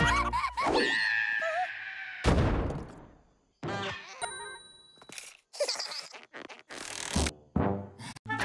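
Cartoon soundtrack: playful music with wobbling pitch slides, then a loud impact about two seconds in that dies away into a brief silence. After that come scattered sound effects, including a ringing ding and a few more hits.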